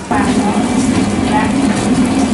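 Commercial planetary stand mixer running, its wire whisk beating the yellow bánh mì butter spread in a steel bowl: a loud, steady motor hum that starts abruptly.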